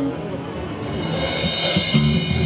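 Rock drum kit struck a few times with a cymbal ringing out over the second half, under a held low guitar note.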